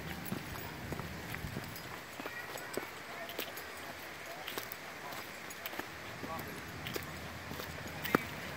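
Footsteps of a walker on a dirt and stony forest trail scattered with dry leaves, a series of light, irregular steps and scuffs.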